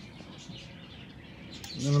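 Faint birds chirping in the background, with one spoken word near the end.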